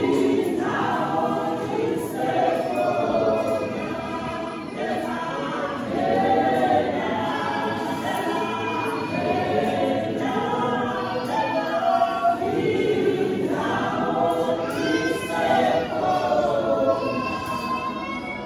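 A women's church choir singing a gospel song in isiNdebele, several voices together in sung phrases.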